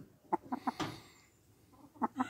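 A hen clucking: a quick run of about five short clucks within the first second.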